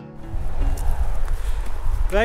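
Wind buffeting an action camera's microphone, a loud, uneven low rumble that starts just as a piece of guitar music cuts off.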